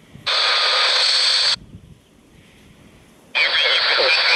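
Speaker of a JGC WE 055 PLL-synthesized world receiver tuned on shortwave around 7.07 MHz: shortwave static and signal switch on abruptly, cut off for almost two seconds as the tuning steps and the receiver mutes, then switch back on near the end.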